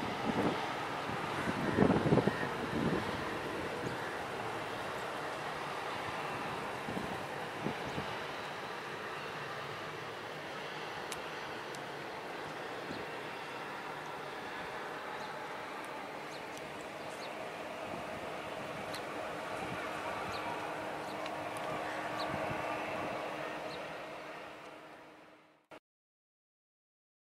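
Distant jet engine noise of a departing Boeing 747 freighter climbing away, a steady rumbling haze, with wind buffeting the microphone in a few loud thumps about two seconds in. The noise fades out shortly before the end.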